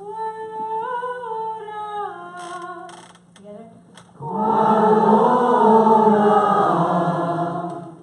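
A single voice sings a short phrase of a nigun melody, then about four seconds in a roomful of voices sings together, loud and full, breaking off just before the end.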